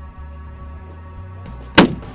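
Steady background music, then near the end a single very loud shot from an extreme-long-range rifle fired prone, with a short ringing tail.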